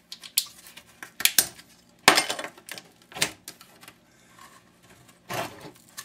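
Parts of a flat-screen computer monitor clinking and knocking as it is taken apart by hand. There is a series of separate clicks and knocks, and the loudest is a short clatter about two seconds in.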